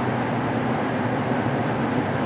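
Steady mechanical hum with an even rushing noise, like a fan or air handling running, with no distinct events.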